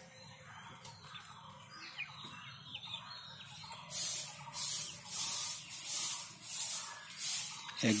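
Water splashing and spraying at the surface of a fish tank, a soft hiss that from about halfway turns into a run of short hissing spurts, roughly one every half second to second. There are faint bird chirps early on.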